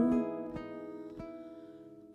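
A slow Vietnamese ballad played back from a reel-to-reel tape recorder: the singer's held note ends just after the start, and a few plucked accompaniment notes ring on and fade away.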